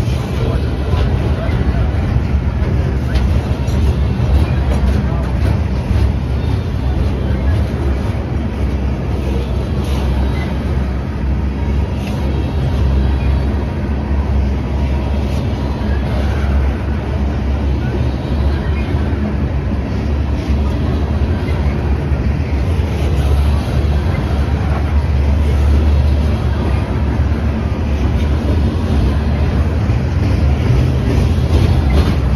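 Freight cars of a passing train rolling by close at hand: a steady low rumble of steel wheels on the rails, with a few light clicks.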